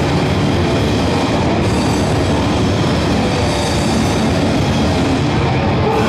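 Metal band playing live, loud and unbroken: electric guitars and a drum kit, heard from within the crowd.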